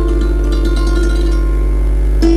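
Santoor struck with its light wooden hammers, playing a dhun in raga Misra Kirwani: ringing, overlapping notes, with only a few soft strokes in the middle while the strings ring on. A steady low hum lies underneath.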